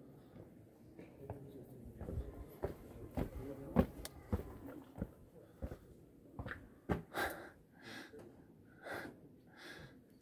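Footsteps and handling knocks as a phone camera is carried along the cave trail, with faint distant voices and several short breathy bursts near the end.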